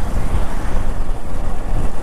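Motorcycle running while being ridden, heard as a steady low rumble mixed with wind buffeting on the microphone.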